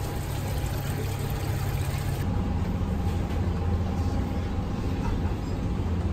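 Steady low hum of supermarket refrigerated display cases and ventilation, with no clear single events; the hum shifts slightly about two seconds in.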